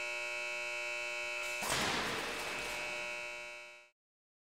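Steady multi-toned machinery hum from a crash-test sled rig. About one and a half seconds in, a burst of hissing noise with a few sharp clicks rises over the hum and fades away over about a second.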